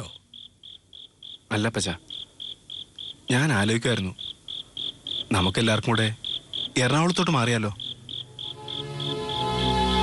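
Cricket chirping in a steady, high-pitched pulse, about four or five chirps a second, between short lines of men's dialogue. Soft background music swells in near the end.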